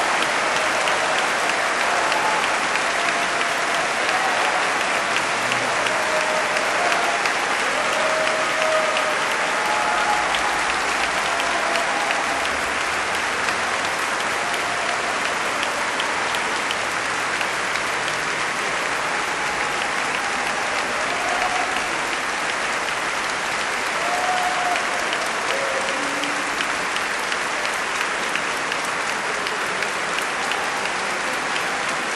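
A large audience applauding steadily, the clapping growing slightly quieter toward the end.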